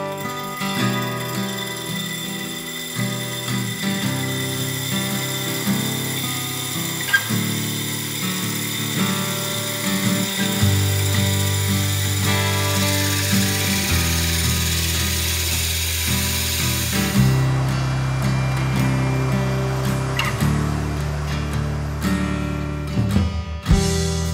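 Cordless drill spinning a diamond-tipped hole saw, grinding a hole into a granite countertop with a steady high whine, under guitar background music.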